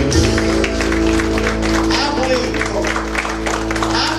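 Church keyboard holding sustained chords while the congregation claps, with voices calling out from about halfway through.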